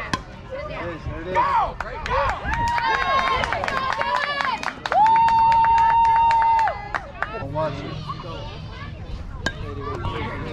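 High-pitched voices shouting and cheering from the sideline, with a few sharp claps. About five seconds in comes one long, steady, high shout lasting nearly two seconds, the loudest sound.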